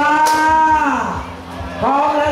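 A singing voice holds one long note for about a second, its pitch dropping as it ends, then starts a new phrase near the end.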